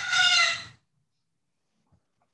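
A rooster crowing in the background of the call. The crow ends on a long held note that sinks slightly in pitch and stops about three quarters of a second in.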